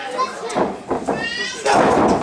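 Wrestling audience shouting, some voices high-pitched like children's, with two sharp smacks about half a second and one second in. A louder burst of crowd noise comes near the end.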